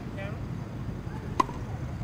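A single crisp pock of a tennis racket's strings striking a ball, about one and a half seconds in, over a steady low rumble of city background.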